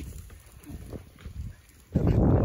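Low rumble with faint background voices.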